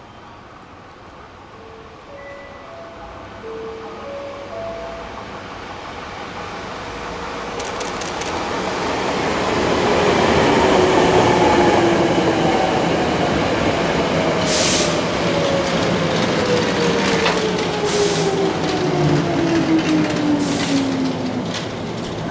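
Hankyu 5100 series four-car electric train approaching and running past, the rumble of its wheels on the rails building up and then holding steady. A whine falls steadily in pitch through the second half as the train slows to arrive, with a few short hisses near the end.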